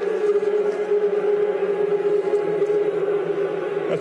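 A steady, unbroken drone on one held pitch, with fainter steady tones above and below it.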